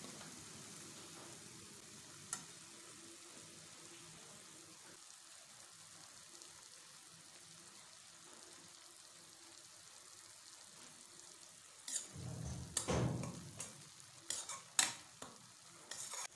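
Minced onion frying in oil in a stainless steel pressure cooker: a faint, steady sizzle. About twelve seconds in, a metal spoon scrapes and clinks against the pot several times as the onion is stirred.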